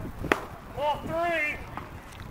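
A pitched baseball pops sharply into the catcher's leather mitt once, about a third of a second in. Half a second later a voice calls out loudly in drawn-out tones, like an umpire's or player's call on the pitch.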